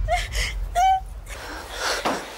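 A woman gasping and crying out in distress: two short, sharp cries, the second, just before a second in, the loudest, then a breathy gasp near the end.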